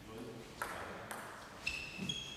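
Table tennis ball bouncing in three sharp clicks, the last and loudest near the end giving a short, high ringing ping. A brief voice is heard at the start.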